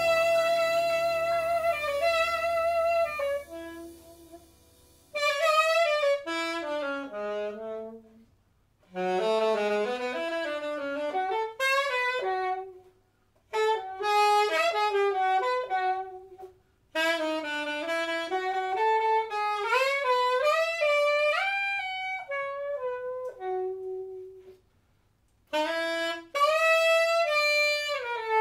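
Alto saxophone playing jazz. A sustained ensemble chord with low notes underneath dies away about five seconds in, leaving the saxophone alone in quick runs and short phrases with brief silences between them, like an unaccompanied cadenza.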